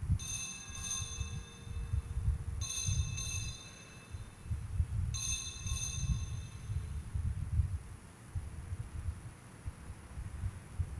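Altar bells rung at the elevation of the host during the consecration, three rings about two and a half seconds apart, each a quick double strike. A low, uneven rumble runs underneath.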